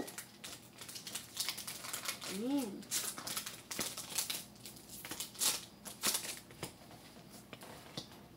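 Trading-card pack wrappers crinkling and cards being shuffled by hand as packs are opened and sorted, an irregular run of sharp crackles. A short hummed voice sound comes about two and a half seconds in.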